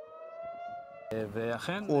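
Civil-defence air-raid siren sounding the rocket warning, one wailing tone slowly rising in pitch. About a second in it is cut off by a man speaking, which is louder.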